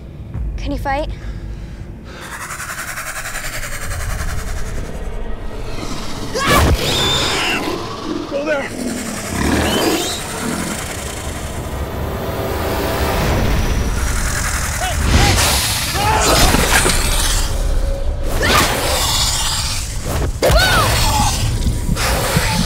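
A horror-film fight soundtrack: score music under wordless yells and screams, with sharp hits and crashes scattered through it.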